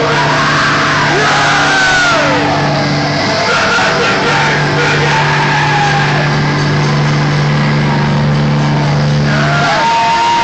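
Loud sustained low drone over a concert PA, with a break about three seconds in, and sliding, falling tones and crowd shouts above it.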